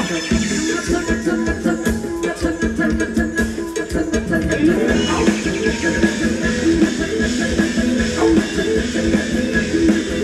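Live Thai band music for ramwong dancing, with a steady beat and sustained instrumental melody lines.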